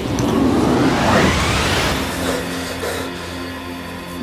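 Rising whoosh sound effect, a noisy sweep climbing steadily in pitch over about two seconds, marking the end of a dream sequence. Music follows with quieter, steady held notes.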